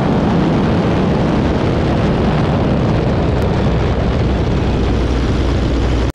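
Biplane's radial engine running steadily in flight under heavy rushing wind across a wing-mounted camera, a continuous loud drone and roar; the deep low hum grows a little stronger in the second half.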